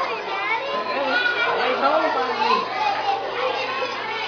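Children's voices chattering and calling out excitedly, high-pitched and overlapping, with no clear words.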